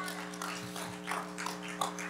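A faint, steady low chord held by a background instrument, with a few soft ticks of room noise.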